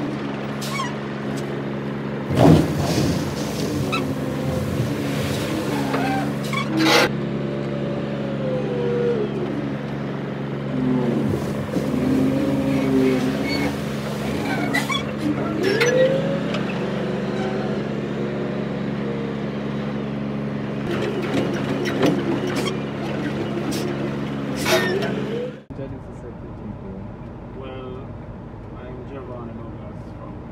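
Wheel loader's diesel engine running steadily under a bucket dump, with whines that rise and fall as the bucket is worked and several loud clunks. About 26 seconds in, the sound cuts to a quieter cab background.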